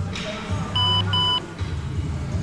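Background music with a steady low beat, and two short electronic beeps in quick succession about a second in.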